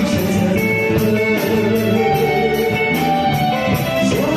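Live band music with a guitar to the fore, over drums keeping a steady beat.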